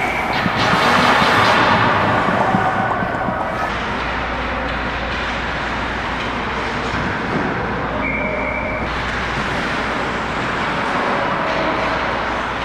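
Ice hockey play heard at the goal net: skate blades scraping and carving the ice over a steady low rink hum, louder for the first few seconds. A short steady high tone sounds once about eight seconds in.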